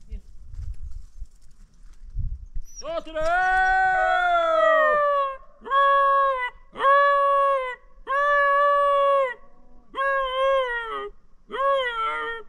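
Dog howling: one long howl falling in pitch about three seconds in, then a run of about five shorter, steady howls with brief gaps between them.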